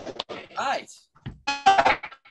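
Voices of several people on a video call reacting, heard through the call audio, over a few scattered claps at the start: a short rising-and-falling exclamation about halfway through, then a held, cheer-like call near the end.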